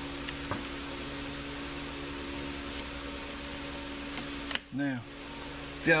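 Electric shop fan running with a steady hum. A light click comes about half a second in, and a short voice sound comes near the end.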